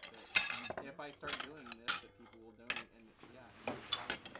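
Cutlery and dishes clinking at a dinner table, a few sharp clinks in the first three seconds, under faint background chatter.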